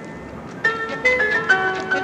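Recorded tango quintet music, bandoneon-led. A softer passage is followed, about half a second in, by a louder phrase of held melodic notes with crisp note attacks.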